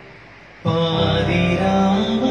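Male voice singing with electronic keyboard accompaniment. Keyboard chords sustain quietly, then about half a second in the voice comes in loud on a long held note over the chords.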